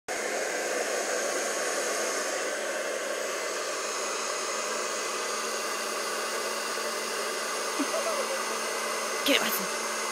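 Handheld blow dryer running steadily, a constant rush of air over a faint low motor hum.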